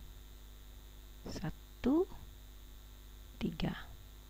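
Only a few short murmured and whispered vocal sounds, one rising in pitch, over a steady low electrical hum.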